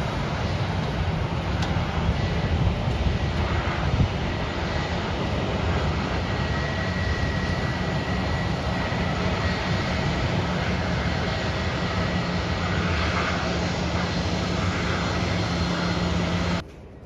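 Jet airliner engines running steadily: a constant rumble with a low hum and a thin high whine held throughout. There is a brief knock about four seconds in.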